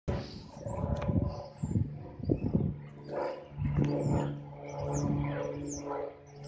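Small plane's engine droning overhead as a steady low hum that comes in about three seconds in, with short high bird chirps repeating and some irregular bumps of wind or handling noise in the first seconds.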